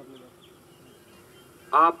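A pause in a man's speech at a microphone, filled only by a faint steady buzz; he starts speaking again near the end.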